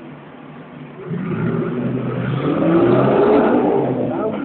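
1957 BSA 600cc single-cylinder motorcycle engine ticking over, then revved up about a second in, its pitch climbing to a peak near three seconds before easing back toward the end.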